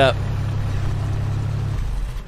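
Hummer H2's engine idling in the music video's soundtrack: a steady low rumble that drops away near the end.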